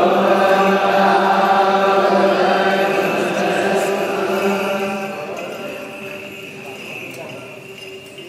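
Eritrean Orthodox liturgical chanting, long notes held steady for about five seconds before it fades away, with small bells jingling throughout.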